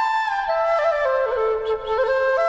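Bamboo flute playing a slow melody of held notes that step downward, then rise again near the end.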